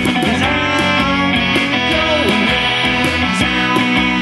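A live rock band playing: guitar-led music with a steady beat, and a lead line gliding up and down in pitch over it.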